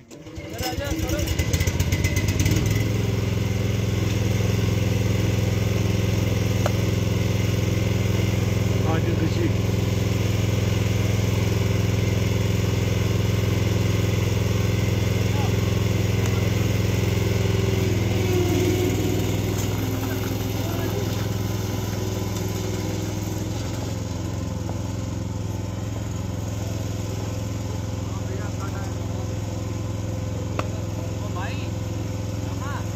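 A steady engine drone, coming in suddenly at the start and easing slightly in level about two-thirds through.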